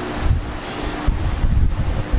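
Rumbling, gusting noise of moving air hitting the microphone, with irregular low surges, as loud as the speech around it.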